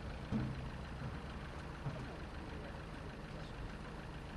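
A truck engine idling steadily, a low even hum, with a brief louder bump shortly after the start.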